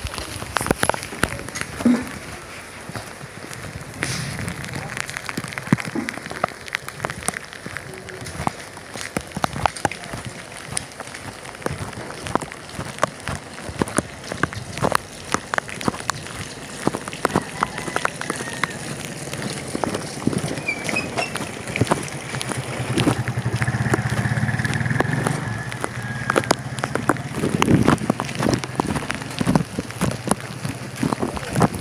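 Steady rain falling, with many irregular sharp taps of drops landing close by. A low hum rises and fades for a few seconds after the middle.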